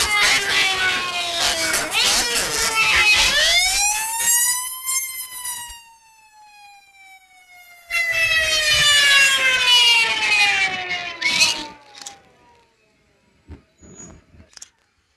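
Fire truck siren wailing: the pitch falls, rises again about three seconds in, then winds down slowly over several seconds and fades out near the end.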